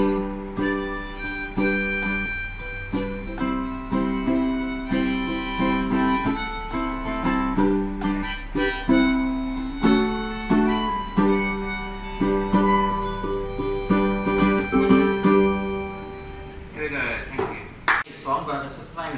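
Harmonica playing held chords and melody over a strummed ukulele, an instrumental break in a live acoustic song; the playing dies away near the end.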